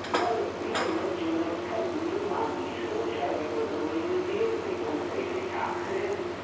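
Indistinct voices talking in the background throughout, with two sharp knocks about a second apart near the start.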